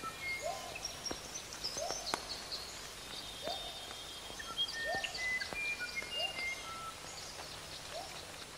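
Birds calling in a natural soundscape: a short low call repeats about every one and a half seconds, under scattered high chirps and thin whistles.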